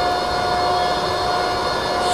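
Steady background noise with a constant mid-pitched hum running through it, unchanging throughout.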